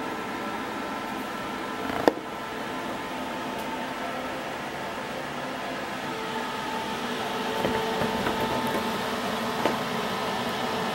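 Steady hum of a Hitbox Multimig 200 Syn inverter MIG welder's cooling fan, with a few steady tones in it, growing a little louder in the second half. A single sharp click comes about two seconds in.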